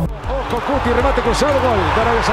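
A football match commentator's raised voice over the steady noise of a large stadium crowd, during a goal.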